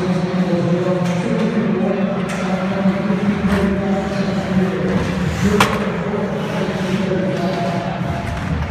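Ice hockey play heard close to the rink boards: a sharp crack of the puck about five and a half seconds in, with lighter stick and board knocks, over a loud steady background of held tones and voices in the arena.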